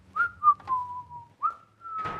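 A man whistling a few notes of a tune: clear single-pitched notes that glide into one another, one held longer with a slight fall, then a rise to a higher held note near the end. A few sharp clicks and knocks are mixed in, the loudest about half a second in.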